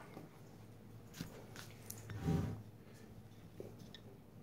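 Quiet mouth sounds of tasting a sip of wine, lips smacking, with a few soft taps and a brief low murmur a little after halfway.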